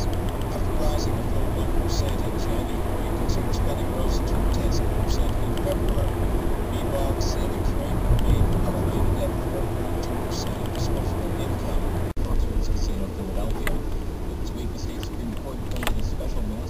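Road and engine rumble inside a moving car's cabin, with talk from the car radio underneath and scattered light ticks. The sound drops out for an instant about twelve seconds in.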